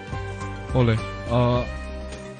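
Speech over background music: two short drawn-out called syllables against a steady sustained music bed.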